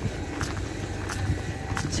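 Footsteps on a railway station platform, a few soft steps over a steady station background noise beside an electric train.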